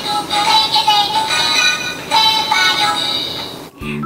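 A tinny electronic melody, the payment tune of a Kongsuni toy cash register, signalling that a card payment is being processed. It breaks off abruptly near the end.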